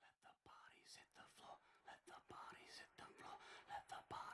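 Near silence, with faint, indistinct voices and small scattered ticks.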